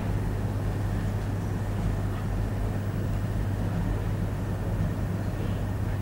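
Steady low hum with a faint even hiss, the background noise of the lecture recording, with no other event.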